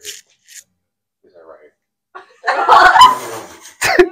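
Indistinct talking with laughter, faint at first, then a loud burst of voices from about two and a half seconds in.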